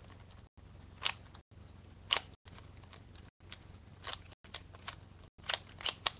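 Plastic 3x3 Rubik's-type cube being turned fast in the hands during a speed-solve: irregular clicking and scraping of the layers, several turns a second, with a few louder clacks. A faint steady hum lies underneath, and the sound drops out briefly about once a second.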